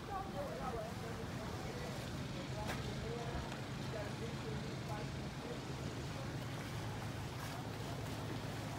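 Steady low engine hum, with faint voices of people talking in the background.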